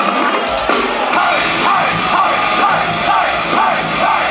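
An industrial metal band playing live, with distorted electric guitars and a drum kit. The deep bass and drums come in full about half a second in.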